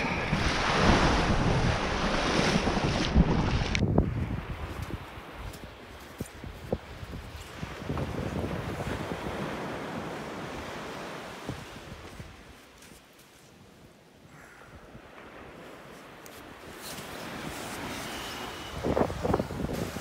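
Surf washing onto a sandy beach, with wind on the microphone. About four seconds in it cuts to a quieter, fainter wash of wind and sea with a few light ticks.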